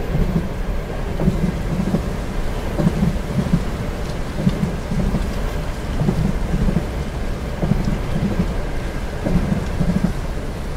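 Train cabin ambience: a steady low rumble of a train in motion, with low wheel knocks over the rail joints in groups of about three, repeating roughly every second and a half. Steady rain patters on the carriage window throughout.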